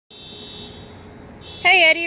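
A steady, high-pitched electronic tone sounds for about a second and a half, fainter after the first half-second. A woman starts speaking near the end.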